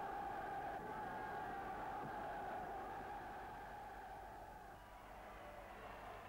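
Faint steady drone with hiss, a band of sound held at one pitch. It dips slightly about five seconds in.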